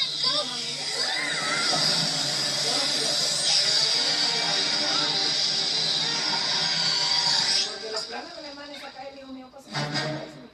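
Cartoon energy-beam sound effect from the Fenton Thermos, heard through a TV speaker: a steady rushing hum with a high whine over it, which cuts off suddenly about three-quarters of the way through.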